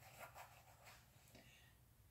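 Near silence with a faint, brief rustle of a folding knife and its pocket clip sliding into a denim jeans pocket, in the first half-second.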